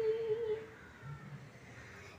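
A woman's unaccompanied voice holding one steady note that fades out under a second in, leaving quiet.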